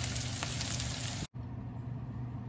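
Red bell pepper pieces sizzling in oil in a pan, with scattered crackles. The sizzle cuts off abruptly a little over a second in and gives way to a quieter, steady low hum.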